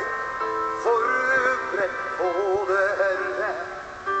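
Slow live ballad: a male voice sings long notes with vibrato over sustained keyboard chords, in two phrases.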